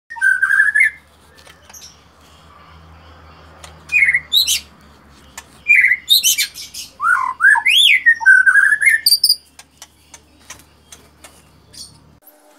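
Male white-rumped shama (murai batu) singing: loud phrases of clear whistles and quick pitch glides rising and falling, in three bursts with short pauses between, then a few seconds of scattered short clicks near the end.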